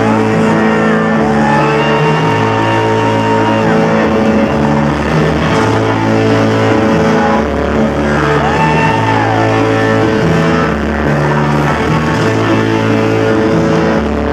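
Live electro-rock band playing loudly: electric guitar over a stepping, repeating bass line. Twice a long high note bends up and down above the band.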